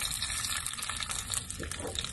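Fenugreek seeds and a red chilli sizzling and crackling in hot olive oil for a tadka: a steady hiss with small pops scattered through it.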